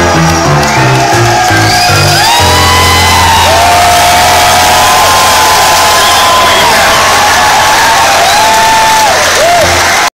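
Live rock band at the end of a song: a stepping bass line gives way, about two and a half seconds in, to one long held low note, while the crowd cheers and whistles over it.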